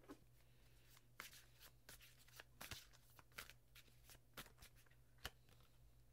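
Tarot cards being shuffled by hand, faint: a string of irregular soft card snaps and flicks, the sharpest about two and three-quarter and five and a quarter seconds in, over a low steady hum.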